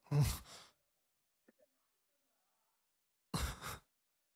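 A man sighing close into a microphone, a breathy exhale near the start. Near the end come two short breathy puffs of breath.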